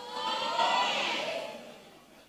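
A congregation responding aloud together: many voices swell at once and die away within about two seconds.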